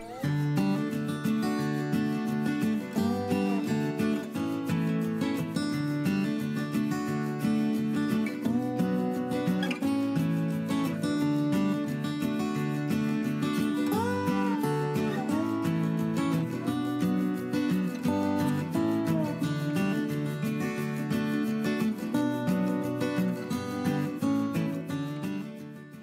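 Background music with guitar, playing steadily and fading out at the end.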